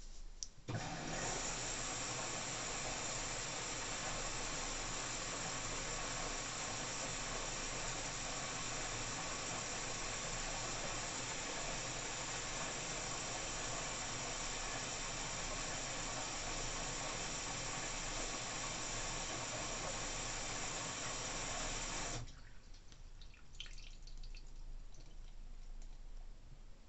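Water rushing into an LG AiDD direct-drive front-loading washing machine through its inlet valve. The fill starts abruptly about a second in and runs steadily for about 21 seconds before the valve shuts off suddenly. A few faint clicks follow.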